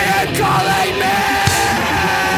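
Fast skate-punk/hardcore rock song playing loud and steady, with a shouted vocal over the band.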